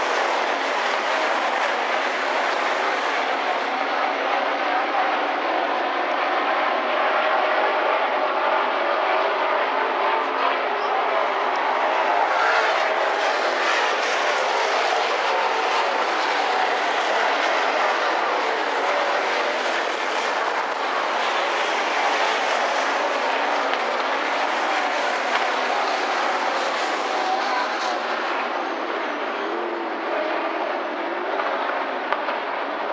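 Dirt-track modified race cars' engines running hard around the oval, a steady massed engine sound that swells as cars pass nearer and eases off toward the end.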